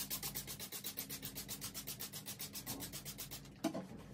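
Plastic spray bottle misting water onto black denim jeans in a rapid, even train of hissing spurts, about ten a second, dampening the fabric before bleaching. The spraying stops near the end, followed by a brief louder knock or rustle.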